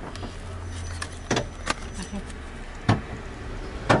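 Four sharp knocks inside a car cabin, spread over a few seconds with the last the loudest, over a low steady rumble.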